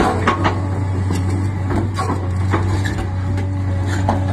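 JCB 380 tracked excavator's diesel engine running steadily under load, with irregular knocks and scrapes as a large marble block is shifted across the ground with its grapple.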